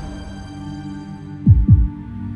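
Dramatic heartbeat sound effect: a single low double thump, lub-dub, about one and a half seconds in, over a held low music drone.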